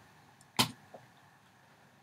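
One sharp click about half a second in, followed by a much fainter tick: the computer click that enters the pasted web address and starts the page loading.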